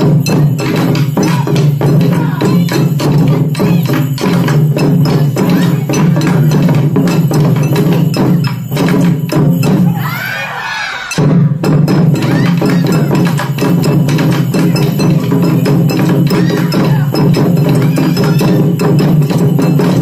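Taiko drum ensemble playing a fast, loud, dense rhythm on nagado-daiko barrel drums. About ten seconds in, the drumming breaks off for about a second while a drummer shouts a call, then comes back in at full strength.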